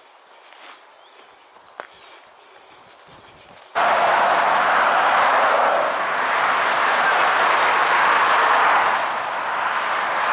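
Steady rush of M4 motorway traffic heard from a footbridge above it. It comes in suddenly at full loudness about four seconds in, after a few quiet seconds with one sharp click.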